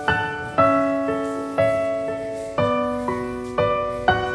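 Background piano music: a slow, gentle melody over sustained bass notes, new notes struck about every half second to a second and each left to ring and fade.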